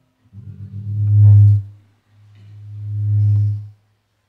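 Two long, low held musical notes on the same pitch, each swelling in loudness and then cutting off.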